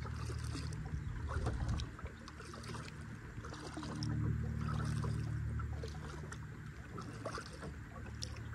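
Kayak paddling on calm water: small splashes and drips from the paddle and water lapping at the hull. Under it runs a low rumble that is loud for the first two seconds, dips, then swells again in the middle.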